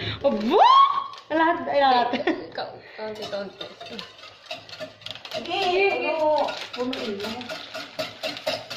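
Women's voices talking, with one long rising "oh" in the first second.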